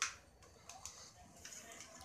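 Plastic parts of a Dell D1920 monitor stand clicking as hands strain to pull the tight-fitting neck out of the base: one sharp click at the start, then a few faint ticks.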